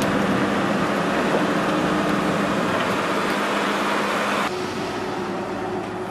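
Tipper truck engine running while it dumps its load of sand, with a rushing noise over the engine that drops away about four and a half seconds in, leaving the engine running.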